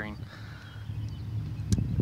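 Low rumble of handling noise on a phone camera's microphone as it is moved, building from about a second in, with one sharp click near the end.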